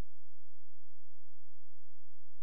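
Near silence apart from a faint, steady low hum.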